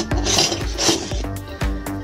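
Two short scraping rubs of metal wire being handled against the foil-wrapped tube, about half a second and a second in, over background music with a steady beat.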